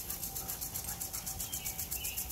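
Impact sprinkler ticking rapidly as its arm strikes the water jet, about seven clicks a second, with the hiss of the spray.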